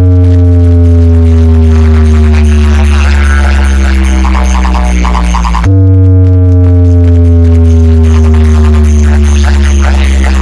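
Large DJ loudspeaker box stack playing electronic music very loud: a heavy, steady bass drone under a stack of tones that glide slowly downward, jumping back up about six seconds in and sliding down again.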